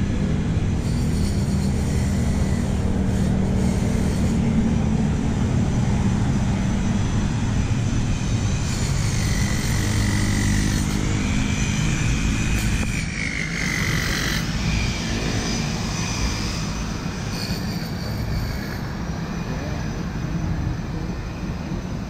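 Steady rumble of city road traffic, cars and motorcycles passing close by. A faint high whine rises and falls midway through.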